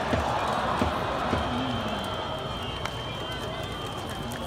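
Baseball stadium crowd: many spectators chattering, with voices close by. A thin, steady high tone runs through the second half.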